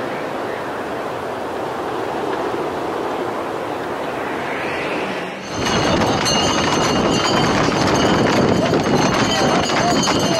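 A steady rushing noise, then, after a cut, the hooves of a tight group of Camargue horses clattering on a paved road close by, among the voices of the crowd.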